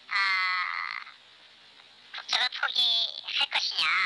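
A person speaking Korean in two phrases, with a pause of about a second between them.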